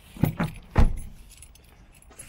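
A few knocks and thumps at a car's open door: two quick knocks, then a heavier thump just under a second in.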